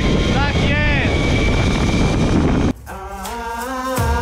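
Wind rushing over the camera microphone of a rider speeding down a zip line, with his wordless shouts rising and falling in pitch. About two-thirds of the way in, this cuts off abruptly to music.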